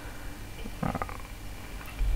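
Pause in narration: a steady low hum and hiss of microphone background noise, with one brief faint vocal sound just before a second in.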